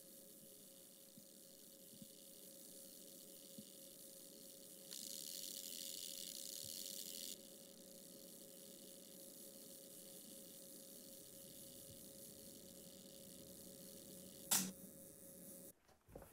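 Quiet room with a faint steady hum. A soft hiss comes up for about two seconds, and one sharp click comes near the end.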